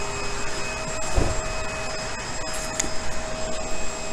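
Steady whirring hum of industrial blower machinery, with a few steady tones running through it, and a single soft low thump a little over a second in.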